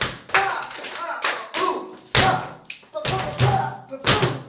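Flamenco dance footwork: several sharp shoe strikes on the floor, about one a second, with a man's voice calling out the rhythm between them.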